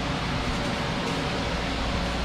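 Steady low hum and hiss from a running window air conditioner, with no distinct knocks or other events.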